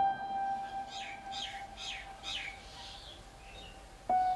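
A single held musical note that slowly fades, with a run of about five short, quick descending bird chirps about a second in.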